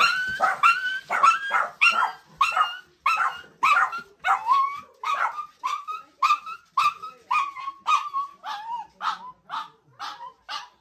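Small dog barking excitedly in a rapid, steady run of short high yaps, about two to three barks a second.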